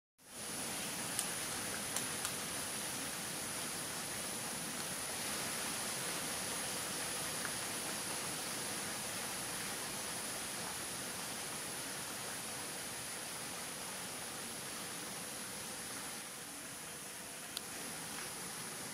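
Steady, even outdoor rush by the river, with a thin high-pitched whine held above it and a few faint ticks about one and two seconds in.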